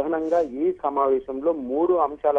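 Speech only: a voice narrating a news report in Telugu.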